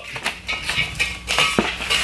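Paper rustling as it is rolled around an empty steel scuba tank on a steel workbench, with a couple of sharp metal clinks about one and a half seconds in.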